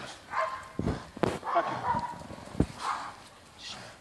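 A dog biting and tugging at a trainer's bite suit, with a few dull thumps from the struggle and a man shouting "Yeah!" over it.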